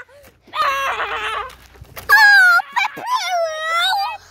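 A boy's high-pitched, wordless vocal cries: three drawn-out wails that bend in pitch, the middle one about two seconds in the loudest.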